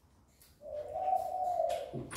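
A single soft, hum-like call: one steady tone held for just over a second, rising slightly and then easing down, starting about half a second in.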